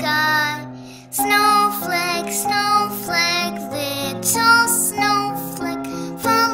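A children's song playing: a sung melody in short phrases over instrumental accompaniment, with a brief drop about a second in before it picks up again. Young children sing along.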